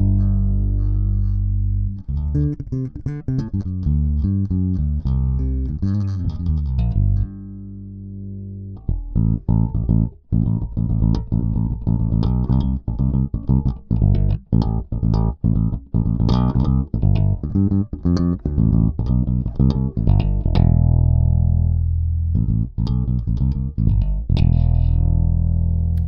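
Music Man StingRay four-string electric bass played fingerstyle, its active EQ's mids turned up. It plays a line of low plucked notes, with one held note about a third of the way in, then a quicker run of notes and longer ringing notes near the end.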